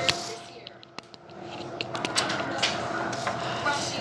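Pizzeria room noise: a steady hum with scattered clicks, knocks and clatter, busier in the second half, and faint voices in the background.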